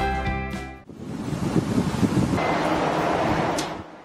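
Background music that stops about a second in, followed by a rushing whoosh of noise that swells and fades away just before the end: a TV news transition sound effect under an animated segment bumper.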